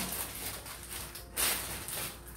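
Plastic wrapper of a biscuit packet rustling as it is wiped with a cloth, with one short crinkle about one and a half seconds in.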